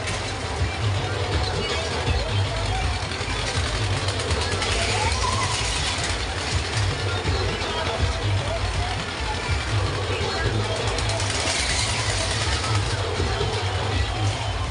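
Steady loud din of a spinning fairground ride, with wind rumbling on the microphone and voices and music mixed in.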